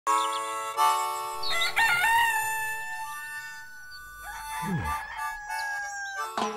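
A rooster crowing, one drawn-out cock-a-doodle-doo from about a second in, over a held music chord. Near the end a sound drops sharply in pitch.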